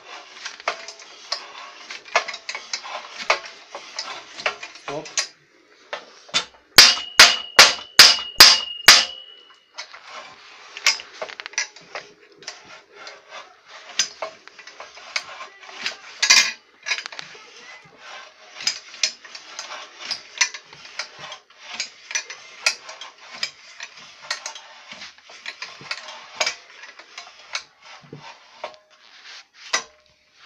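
Homemade pipe bender being worked by hand: steady metal clicks, knocks and rubbing from its frame and lever, with a run of about eight sharp, ringing metal strikes, roughly three a second, starting about seven seconds in.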